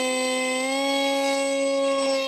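Brushless electric outrunner motor (2212/6, 2700 Kv) driving a 6x3 propeller on an RC foam jet at launch throttle, giving a steady whine with many overtones.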